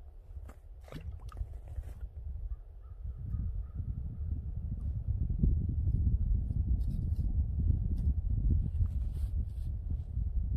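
Wind buffeting the microphone on open ice: a low, gusting rumble that grows louder from about three seconds in, with a few short sharp clicks above it.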